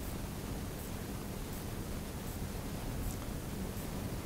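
Steady background hiss with a faint low hum: the room tone of a lecture recording.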